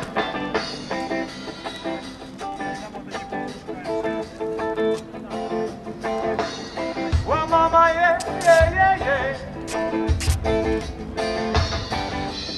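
Live rock band playing the opening of a song, led by electric guitar. A heavy bass and drum beat comes in about seven seconds in, with a held, wavering melodic line over it.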